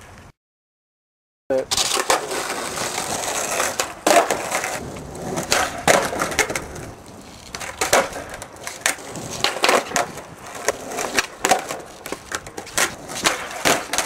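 Skateboard on concrete: wheels rolling and the board repeatedly snapping, flipping and landing with sharp clacks as flatland flip tricks are tried, starting after about a second and a half of silence.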